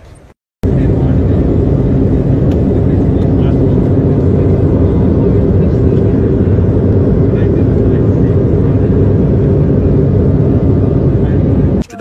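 Loud, steady drone of an airliner in flight. It starts suddenly after a moment of silence about half a second in and cuts off just before the end.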